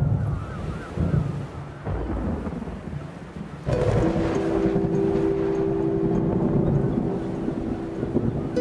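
A deep rumble like thunder. About halfway through, a sudden loud surge of low noise rises into a film score of held low notes.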